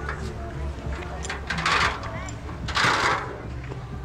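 Faint voices of people on a beach over a steady low rumble, broken by two short, loud hissing bursts about a second apart near the middle.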